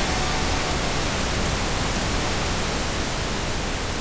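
Steady static-like noise hiss, slowly fading.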